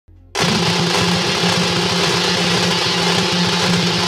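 Vintage film-projector sound effect: a fast, steady clatter with crackle and hiss over a low hum. It starts abruptly just after the beginning.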